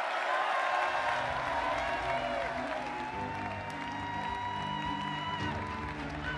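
A rally crowd applauding and cheering over walk-on music. The music's held notes start about a second in, and a steady bass line grows stronger from about three seconds in.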